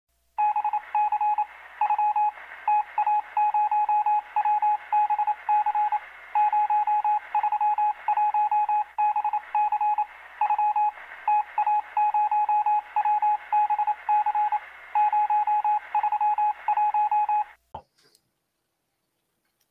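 A single electronic beep tone switched on and off in an irregular run of short and long beeps, like Morse code, over a faint hiss. It sounds thin, as if heard over a telephone or radio line, and cuts off just before the end.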